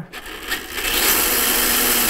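Boom Racing BRX02 1/10-scale RC crawler's electric motor and geared drivetrain whirring at full throttle, its wheels spinning free in the air. The whir builds over the first half-second, then holds steady.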